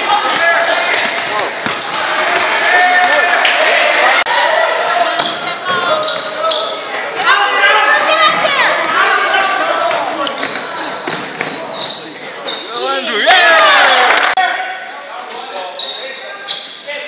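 Live basketball game sound: a ball bouncing on a hardwood gym floor among short sharp strikes, with players' and spectators' voices calling out in a large hall.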